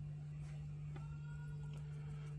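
Quiet pause with a steady low hum, a faint light click about a second in and faint thin tones after it.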